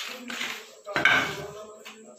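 Clatter of hard objects being knocked and handled, loudest about a second in, with voices in the background.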